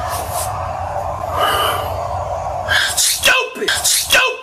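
A steady, noisy roar, then a man's short, loud vocal outbursts in the last second or so.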